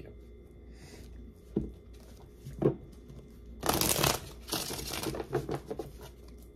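A deck of tarot cards being handled and shuffled: two short taps in the first half, then a dense rustle of cards riffling for just under a second past the midpoint, followed by softer rustling with light clicks as the deck is squared.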